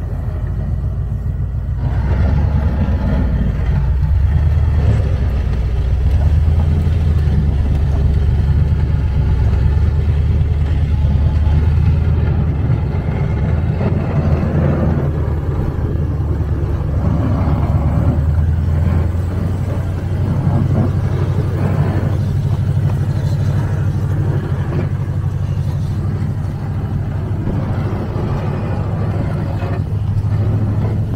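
A full-size SUV's engine runs steadily under load as it plows snow with a front V-plow and a rear drag plow. Mid-range scraping and rushing noise from the blades pushing snow over the pavement swells and fades over the drone.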